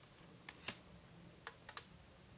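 A few faint, short clicks of tarot cards being handled, their edges snapping and sliding as they are moved from hand to hand.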